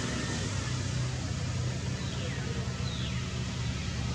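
Steady outdoor background noise, a low rumble under an even hiss, with two faint falling whistle-like sounds about two and three seconds in.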